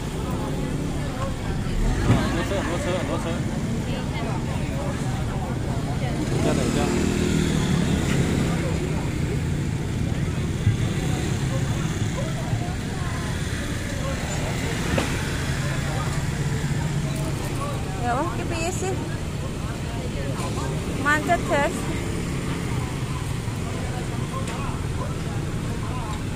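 Street traffic with motor scooters and cars driving past, their engines swelling as they pass, and people's voices close by.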